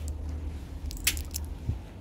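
Low rumble of handling noise on the recording microphone as it is carried and moved, with a few sharp clicks about a second in and a soft thump near the end.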